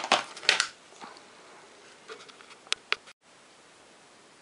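Handling noise from a small electronics programmer and its cable being moved aside: two short rustling knocks in the first half second, then two faint clicks a little before three seconds. The sound then cuts out briefly and only faint room tone is left.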